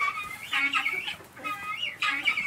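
A hen clucking: a run of short, fairly high-pitched calls through the two seconds.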